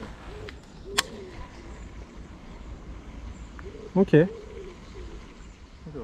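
A bird cooing faintly in a few low notes, with one sharp click about a second in.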